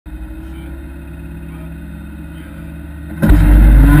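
Honda Civic rally car engine running steadily on the stage start line, then about three seconds in the car launches at full throttle: the engine becomes suddenly much louder and climbs in pitch as it accelerates away.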